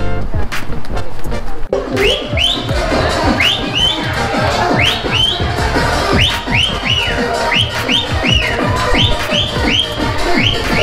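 Upbeat electronic dance music with a kick drum about twice a second and a high whistle-like synth line that swoops up and down, cutting in sharply about two seconds in.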